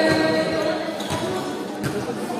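Basketball bouncing on the court floor, a few separate thuds, over background chatter, with music fading out near the start.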